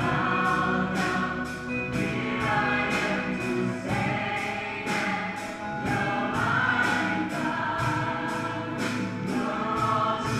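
Live worship song: a group of voices singing together over a small band, with a steady beat of about two strokes a second.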